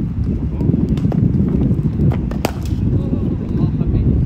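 Wind buffeting the microphone outdoors, with a few sharp knocks cutting through, the loudest about two and a half seconds in.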